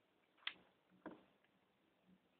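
Near silence broken by two short taps about half a second apart: craft pieces of foam sheet and cardboard being handled and pressed down by hand while gluing.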